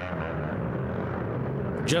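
Race ATV engine running with a steady, even drone.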